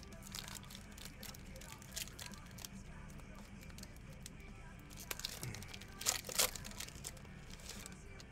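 A foil trading-card pack being torn open and peeled apart by hand: scattered crinkling and crackling, with a louder burst of crinkling about six seconds in. Faint steady background music runs underneath.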